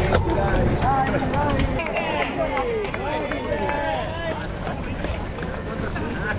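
Several people calling and shouting at once, their voices overlapping, over the low rumble of wind on a bike-mounted camera's microphone.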